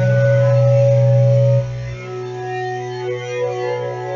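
Electric guitar playing sustained, ringing notes. A loud low note is held for about a second and a half and then drops off sharply, leaving quieter held notes.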